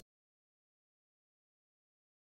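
Complete silence: dead digital silence with no room tone.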